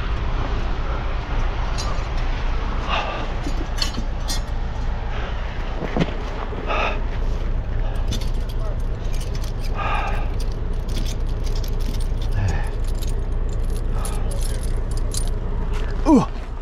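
Steel tire chains clinking and rattling as they are handled and fitted around a truck's drive tire, over the steady drone of an idling truck engine.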